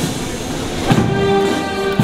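Slow brass-band music: sustained chords over a drum beat about once a second.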